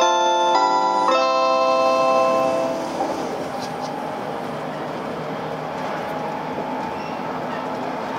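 JR Shikoku's onboard announcement chime, a short electronic melody of bell-like notes, playing out and fading about two and a half seconds in. After it comes the steady running noise of the 8000 series electric train, heard from inside the passenger car.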